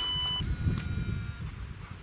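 Drone detector sounding an alert that enemy drones are near. There is a short, steady high beep at the start, then a fainter, longer tone about half a second in, over a low rumbling background noise.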